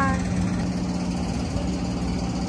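A steady engine hum with a constant low drone that holds unchanged throughout.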